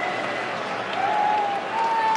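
Stadium football crowd, a steady roar of noise, with one held note starting about halfway through and rising slightly.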